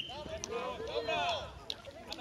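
Voices calling out during a football match, with two sharp knocks: one about half a second in, the other near the end.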